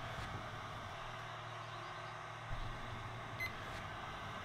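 Steady low hum with faint hiss, and a short faint electronic beep about three and a half seconds in.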